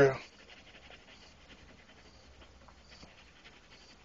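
The end of a spoken phrase right at the start, then near silence with a few faint ticks.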